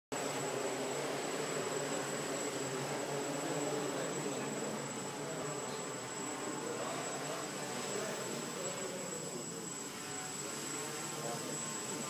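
Small quadcopter's electric motors and propellers buzzing steadily as it hovers, the pitch wavering slightly.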